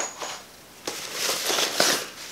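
A sharp click at the start, then from about a second in a rough rustling and crinkling as the scan tool's cables are picked up and handled.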